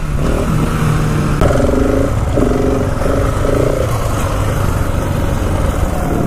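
KTM 690 Enduro R single-cylinder motorcycle engine running steadily under way, with wind noise on the helmet microphone.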